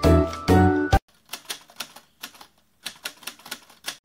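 Background music cuts off about a second in, followed by a run of light, irregular clicks, several a second, like typing on keys.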